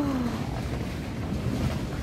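Steady low rumbling background noise with no distinct events, like wind on a phone microphone. A woman's drawn-out 'wow' trails off and falls in pitch in the first half second.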